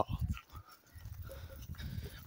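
Faint sounds from a mixed herd of goats, water buffalo and cattle walking past close by.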